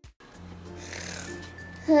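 Steady low electrical hum with faint hiss from a home video recording. A person's drawn-out vocal sound begins right at the end.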